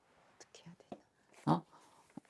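A quiet pause in talk: a few faint clicks, then one short murmured word about one and a half seconds in.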